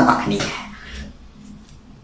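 A man's speech trailing off in the first half-second, then a pause with only faint room noise.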